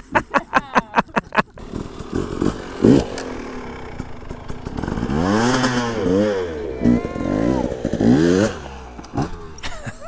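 Dirt bike engine revving, its pitch rising and falling in several blips, with a rapid run of short loud pulses at the start.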